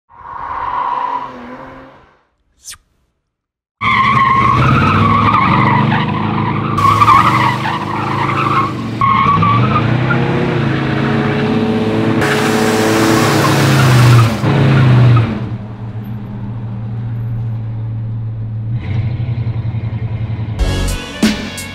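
Slammed 1967 Cadillac doing a burnout and slide: the engine revs hard, rising and falling, while the rear tires squeal on asphalt. Near the end it settles to a lower, steadier run.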